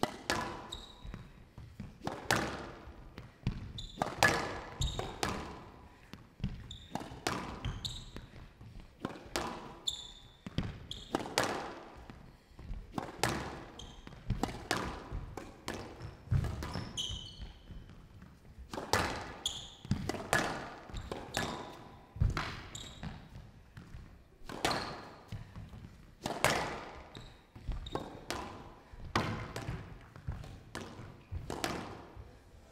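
A squash rally: the ball cracking off the rackets and the walls of a glass show court about once every one to two seconds, each hit echoing briefly in the hall. Short high squeaks from the players' shoes on the court floor come between the hits.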